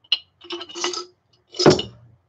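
Ceramic CPU chips rattling and clinking against each other inside a glass jar as it is tipped, the glass ringing lightly. Near the end the jar is set down on the workbench with a louder knock.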